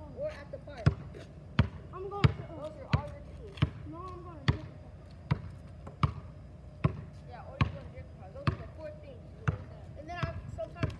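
Basketball being dribbled on an asphalt street, a steady run of sharp bounces about one every three-quarters of a second, with faint voices in the background.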